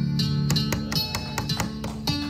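Acoustic guitar music: strummed chords and quick picked notes, several strokes a second, over held low notes. This is the instrumental close of a country-western ballad after its last sung line.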